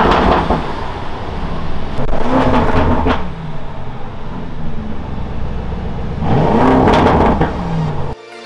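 Lamborghini Urus's twin-turbo V8 running as the SUV is driven down out of a transporter trailer, with a steady low rumble between three revs, each rising and then falling in pitch: one at the start, one about two and a half seconds in and one near the end.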